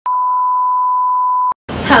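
Television test tone played over colour bars: one steady high beep lasting about a second and a half that cuts off suddenly. After a short gap, a voice over music starts near the end.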